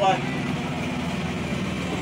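A vehicle engine idling steadily, a low even hum with no change in pitch.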